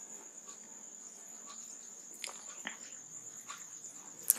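Faint, steady high-pitched insect trill in the background, with a couple of soft clicks a little past the middle.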